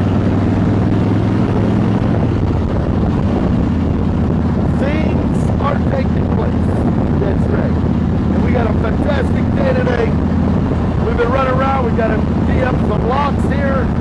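Motorcycle engine running steadily while riding, with wind rushing over the microphone.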